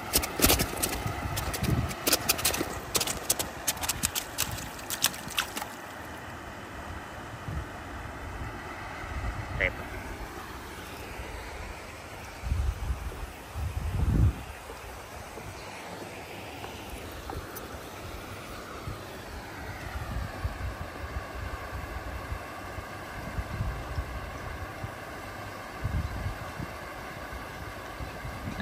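Wind buffeting the microphone over a steady outdoor noise. A quick run of clicks fills the first six seconds, and a few louder low thumps come about 12 to 14 seconds in.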